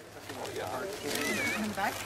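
Indistinct chatter of several people talking at once, fading in over the first half second.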